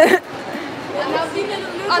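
Speech only: women chatting in a large indoor hall, with a short loud burst right at the start.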